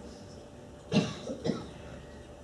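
A person coughing: a quick run of short coughs about a second in, the first the loudest.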